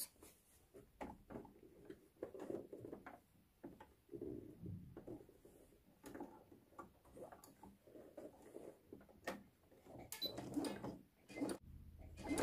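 Faint, irregular rustling of fabric with a few small clicks as a hem is folded and set under a sewing machine's presser foot; the machine is not running.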